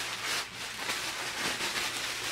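Tissue paper crinkling and rustling as it is pulled open and handled, a continuous run of soft crackles.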